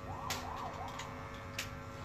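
A faint siren-like wail whose pitch rises and falls quickly a few times in the first second, over a steady mains hum, with a few sharp clicks.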